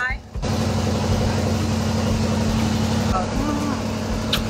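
Boat engine running steadily: a low, even hum under a rushing noise, cutting in suddenly about half a second in.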